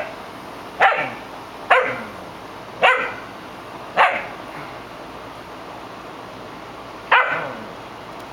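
A small dog barking: five sharp barks, the first four about a second apart, then a pause of about three seconds before one more near the end.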